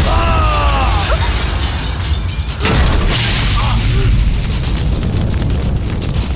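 Film sound effects of a car crash and explosion. A falling screech comes in the first second, then crashing and shattering, and a big boom about three seconds in, all over a heavy low rumble.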